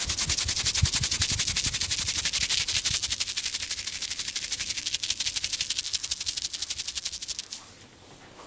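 Fingers rubbing rapidly back and forth over a man's scalp and hair in a head massage, an even rhythm of quick rustling strokes that fades out near the end.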